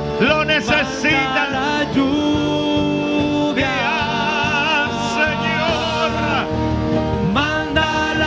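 A man singing a Spanish worship song into a microphone in long, drawn-out notes with a wavering vibrato, backed by a live church band with electric guitar and drums.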